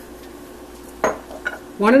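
A glass measuring cup clinks sharply once against hard kitchenware about a second in, followed by a couple of lighter taps, over a faint steady hum.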